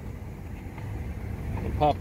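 Mitsubishi Raider's 4.7-litre V8 idling, a steady low rumble heard from inside the cab.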